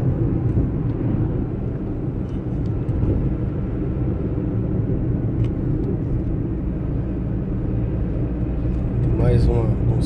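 Steady low drone of a vehicle's engine and tyres, heard from inside the cabin while driving at an even speed.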